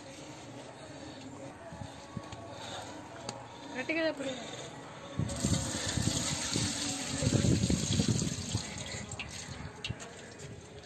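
Water poured from a pot through a metal mesh strainer into a large aluminium pot, splashing as a steady rush. It starts about five seconds in, is strongest a couple of seconds later and tapers off near the end.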